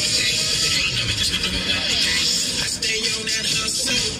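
Recorded dance music for a cheer routine, playing loudly without a break.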